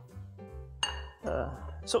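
Background music with a steady low bass line, under a sharp clink of dishware against a metal pot about a second in, followed by a brief clatter.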